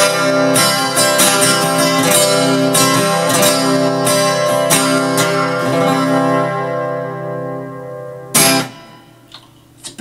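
Acoustic guitar strummed in a steady rhythm, bringing the song to its close. The strumming stops about six seconds in and the last chord rings out. Near the end one short, sharp strum is quickly damped.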